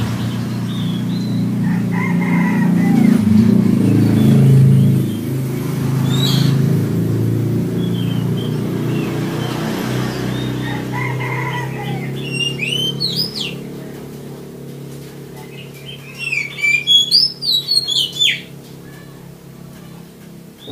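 Oriental magpie-robin singing: scattered short notes, then two bursts of rapid, sweeping whistled phrases near the end. Under the first part runs a low, steady engine-like hum that fades out after about two-thirds of the way through.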